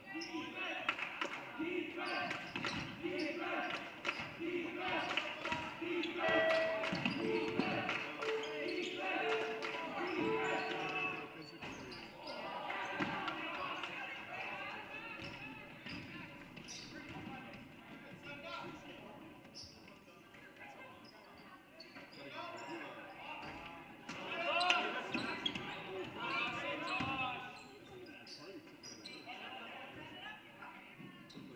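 A basketball being dribbled on a hardwood gym floor, with players' and spectators' voices in the gymnasium.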